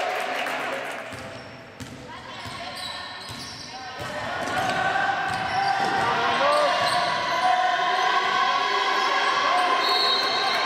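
Basketball game in a sports hall: sneakers squeaking on the court floor and the ball bouncing, with players calling out. It is quieter for a couple of seconds, then the squeaks come thick and fast from about four seconds in.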